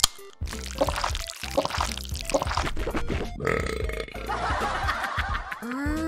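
A cartoon burp sound effect, as after a drink of cola, over background music. A sliding tone rises and falls near the end.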